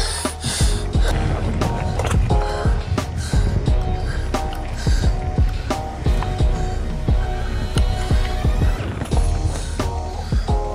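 Background music with held notes, over the rolling and rattling of a mountain bike on a dirt trail.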